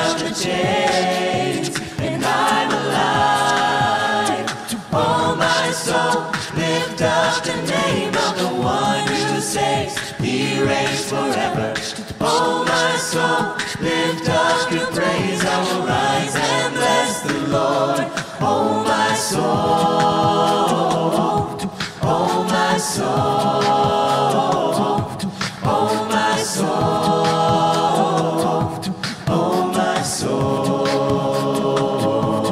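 A mixed group of voices singing a worship song a cappella in close harmony, with a steady beat of sharp percussive clicks under the voices.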